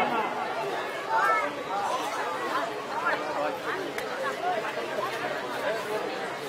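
Many people talking at once in a low murmur: an audience chattering among themselves, with no single voice standing out.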